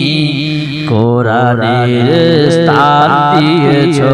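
A man singing a devotional verse into a microphone in a slow, ornamented, chant-like melody, the sung delivery of an Islamic waz sermon, with a short breath break about a second in.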